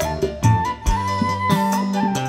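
Live dangdut band playing through a PA system: a flute melody line stepping up in pitch over drum hits and bass.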